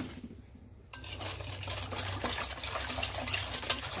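Wire whisk stirring coconut milk and sugar in a stainless steel bowl, starting about a second in: a steady run of quick metal clicks and scrapes against the bowl as the sugar is stirred until it dissolves.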